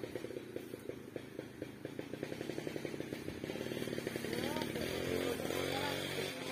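Chainsaw engine idling with a quick, even pulse. Voices calling out join it from about four seconds in.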